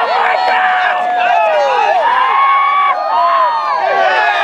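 A crowd of spectators yelling and cheering, several voices overlapping in long, drawn-out shouts.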